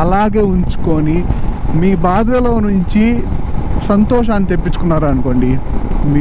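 A man talking steadily over a constant low rumble of wind and motorcycle riding noise.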